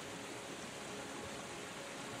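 A soft, steady hiss of a water-ambience background track, like running water or rain.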